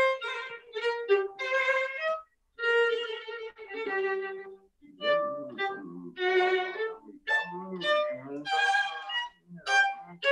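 Solo violin playing a theme in short bowed phrases, with brief pauses about two and five seconds in, heard over a video call.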